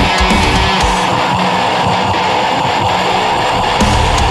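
Instrumental passage of a heavy metal song: electric guitars strumming a riff with the band, no vocals.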